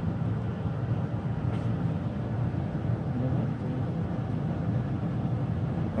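A steady low hum, like a running fan or motor, holding at an even level.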